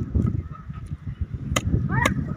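A large curved knife chopping fish on a wooden block, with two sharp strikes about one and a half and two seconds in, over a steady low rumble. A short honking call sounds just before the second strike.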